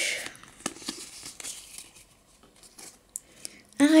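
Pokémon trading cards being handled: cards sliding against one another and flicked from one hand to the other, a string of soft scattered clicks and rustles.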